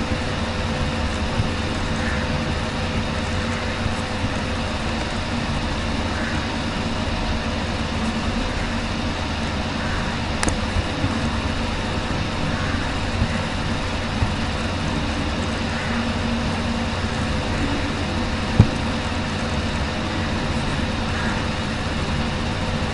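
Steady background noise picked up by the narrator's microphone: an even hiss with a faint low hum. Two short clicks cut through it, a faint one about halfway and a sharper, louder one near the end.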